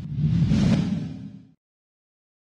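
A whoosh transition sound effect that swells and then fades away after about a second and a half.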